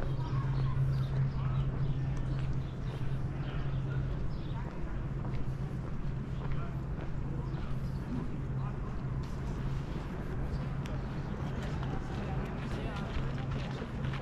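Outdoor walking ambience: indistinct voices of passers-by and footsteps, with short clicks growing more frequent in the second half, over a steady low hum.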